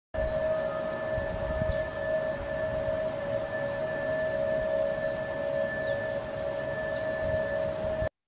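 Unexplained steady drone heard in the open sky, offered as a skyquake sound: two held tones, one mid-pitched and one higher, over a background hiss and faint low rumble.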